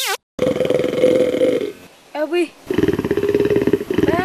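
Two long, rough growls from a man's voice imitating a wild animal, with a brief cry between them. A short rising comic sound-effect glide sounds right at the start.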